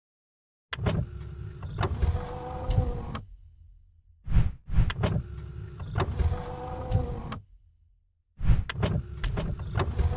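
Mechanical sliding sound effect for an animated logo intro: a motor-like whir with clicks and knocks, played three times, each run about three seconds long with short silent gaps between.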